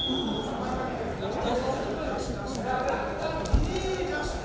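Voices of coaches and spectators in a large sports hall, echoing, with a single dull thud on the wrestling mat about three and a half seconds in.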